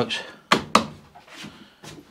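Two sharp knocks about a quarter of a second apart, then a couple of fainter taps, as hands handle the lawn mower's battery housing.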